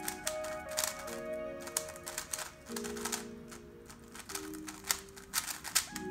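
DaYan TengYun V2 M 3x3 speedcube, set at tension 1 and elasticity 1, being turned fast during a timed solve: a quick, irregular run of plastic clicks and clacks. Background music with sustained chords plays underneath.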